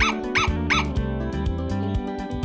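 Three short, high yelps from an animal, about a third of a second apart near the start, over background music.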